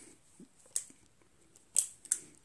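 A few short, light metallic clicks from a Ruger .357 Magnum single-action revolver being handled and turned over in the hands. The loudest click comes about three-quarters of a second in, and another comes near the end.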